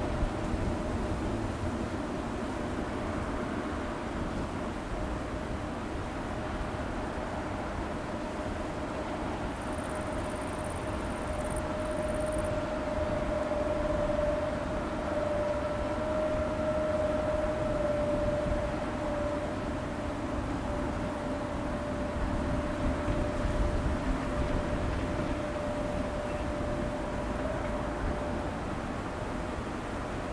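Bernina Railway electric train running along a curve at a distance: a steady low rumble with a sustained high-pitched tone that swells slightly in the middle and fades a little near the end.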